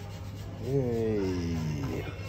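Rubbing and rasping of a foot being scrubbed during a pedicure. A drawn-out voiced hum slowly falls in pitch and is the loudest part, starting about half a second in and lasting over a second.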